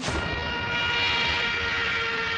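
Cartoon speed sound effect of a character dashing at high speed: a steady rushing noise with held ringing tones over it, starting suddenly.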